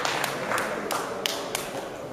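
Scattered hand clapping from a small audience in a sports hall, a few separate claps over a faint murmur, dying away.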